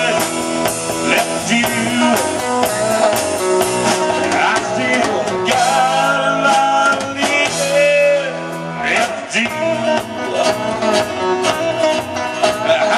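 Live country-rock band playing: a man singing lead over a drum kit with steady beats and cymbals, and strummed acoustic and electric guitars.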